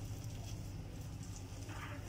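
A hand mixing grated boiled potato with chopped vegetables and rice in a glass bowl: faint, soft squishing and rustling, over a low steady hum.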